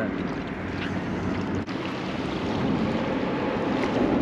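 Steady wind noise on the microphone over choppy water lapping around a small boat.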